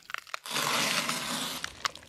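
Animation sound effect: a burst of noise lasting about a second, with a few sharp clicks before and after it.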